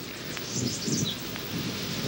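Low outdoor background noise: wind and rustling leaves.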